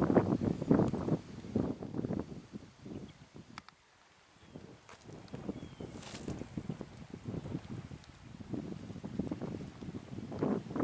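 Wind buffeting the camera microphone in uneven gusts, a low rumble that drops away for about a second partway through before picking up again.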